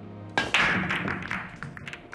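A pool break: the cue strikes the cue ball, which smashes into the racked balls with a sharp crack about half a second in. The balls then clatter and click against each other and the cushions, dying away over about a second.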